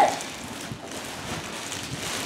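Large clear plastic bag crinkling and rustling as it is pulled and handled around a car seat.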